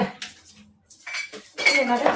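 A slotted spatula clicking and scraping a few times against an electric griddle plate while pancakes are handled, with a voice starting near the end.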